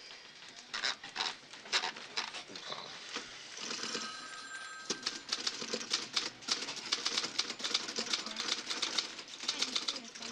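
Typewriter keys being struck: scattered keystrokes at first, then fast, continuous typing from about halfway through.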